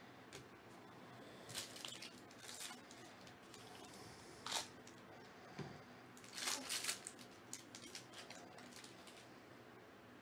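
Foil wrapper of a Bowman baseball card pack crinkling and tearing as it is opened by hand, in a series of short bursts. The loudest come about four and a half seconds in and again around six and a half to seven seconds.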